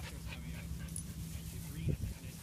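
A dog whimpering faintly, short high whines over a steady low rumble, with a brief rising cry near the end.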